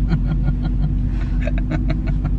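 Steady low engine and road rumble heard inside a Renault car's cabin while it drives along a snowy road.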